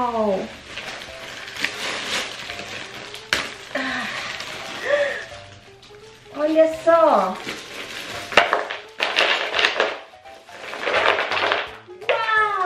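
Thin plastic packaging crinkling and rustling as it is handled, in several separate bursts, between a few short voiced exclamations that fall in pitch.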